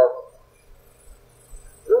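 A man's speaking voice: a drawn-out "So" trails off, a pause of about a second and a half with only a faint steady hum follows, and talking starts again near the end.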